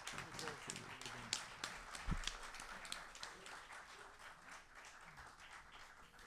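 Applause: many hands clapping, fading gradually as it dies down.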